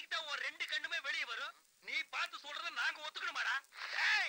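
Speech only: rapid Tamil film dialogue, with a short pause about a second and a half in.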